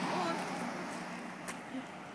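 Faint voice over a steady low hum, with one sharp click about one and a half seconds in.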